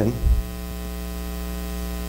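Steady electrical mains hum with a ladder of evenly spaced overtones, carried on the microphone and sound system, with a brief low thump about a third of a second in.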